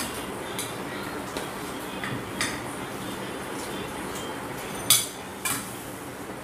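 Tableware clinking at a meal: a handful of sharp clinks of serving spoons and dishes against plates and bowls, the loudest about five seconds in, over a steady low hum.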